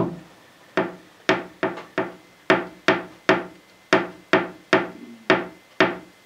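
About a dozen sharp taps or knocks on a hard surface, irregularly spaced at roughly two to three a second.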